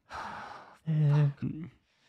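A man's breathy sigh, a long exhale, followed by a short voiced grunt or murmur about a second in.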